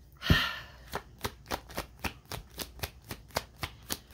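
A deck of cards being shuffled by hand: one sharp knock with a brief riffle near the start, then an even run of light card slaps, about four a second.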